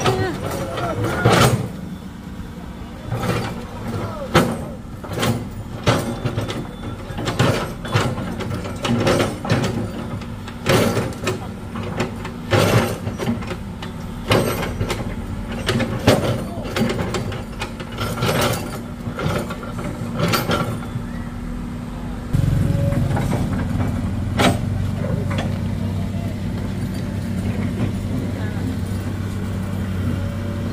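Hydraulic excavator's diesel engine running, with a sharp knock or scrape roughly every second as it works the ground; about two-thirds through, the engine becomes louder and steady. Voices talk in the background.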